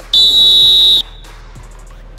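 A whistle blown in one steady high blast of about a second that stops suddenly, followed by faint background hiss.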